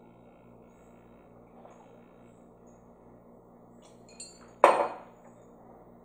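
A ceramic coffee mug set down on a marble tabletop: one sharp clack about two-thirds of the way in, with a few faint ticks just before it.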